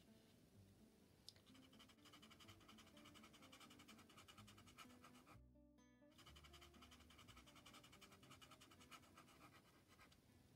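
Faint, quick strokes of a white tinted charcoal pencil scratching on black drawing paper, breaking off briefly about halfway, over faint background music.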